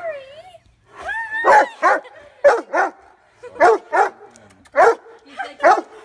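Dog yelling in excited greeting: a wavering whine, then a rising, howl-like cry, followed by a string of short yelping barks, mostly in pairs, about one pair a second.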